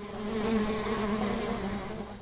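Honeybees buzzing: a steady droning hum that swells up in the first half second.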